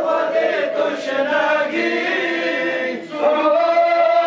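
A group of men chanting a mourning lament (noha) together in unison, long held lines. About three seconds in they break off briefly between lines, then take up the next line.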